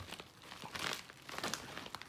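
Plastic packaging crinkling and crackling in irregular bursts as it is pulled at to get it open, the crackles densest just before the middle.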